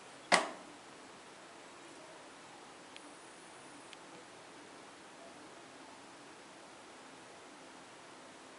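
One sharp knock about a third of a second in, dying away quickly, then two faint ticks a second apart over a low steady hiss of room noise.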